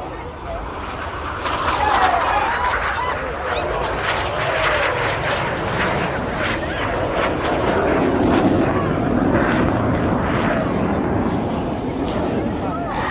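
BAE Hawk T1 jets, each with a single Rolls-Royce Adour turbofan, making a low, fast opposition pass. The jet noise swells about a second in and stays loud, with voices over it.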